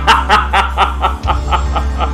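A man laughing: a run of short chuckles, about four a second, growing weaker toward the end.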